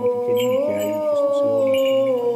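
Byzantine chant: a cantor holds one long melismatic note, stepping up in pitch about half a second in and back down near the end, over a second voice sustaining a low drone (the ison).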